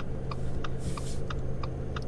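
Steady, even ticking, about three ticks a second, over a low steady hum inside a car.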